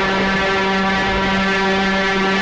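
A loud, steady, horn-like drone held at one pitch with many overtones: a sustained note in the film's background score.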